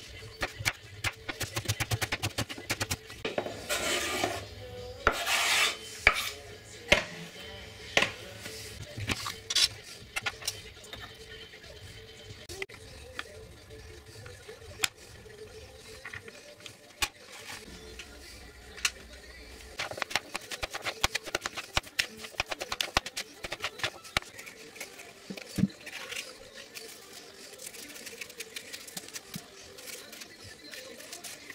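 Kitchen knife chopping an onion on a wooden cutting board: a quick run of knocks of the blade on the board. In the middle stretch the clicking grows sparser and quieter while soft boiled carrots are cut with a wire egg slicer.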